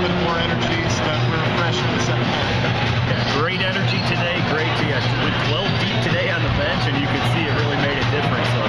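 Talking heard over loud background music, with a steady low hum underneath.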